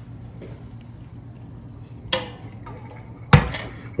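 Kitchenware being handled on a glass cooktop: a sharp clink about two seconds in, then a louder knock, as a stainless kettle and a glass measuring cup are set down and picked up. A faint high whistle stops about half a second in.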